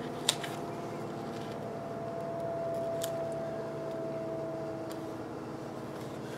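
Paper and sticker handling on a spiral planner page: one sharp tap a moment in and a few light ticks later, over a steady room hum with a faint held tone that fades out near the end.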